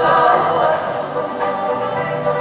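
A group of voices singing a Tongan song together with musical accompaniment, as music for a traditional Tongan dance.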